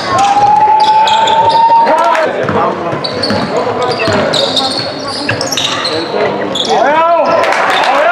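Basketball being dribbled on a hardwood gym floor, with players' shoes squeaking and voices calling out during play.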